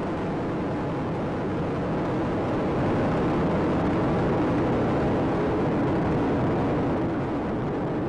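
Space Shuttle rocket motors in powered ascent, heard as a continuous rushing rumble with no distinct tones, rising slightly a few seconds in.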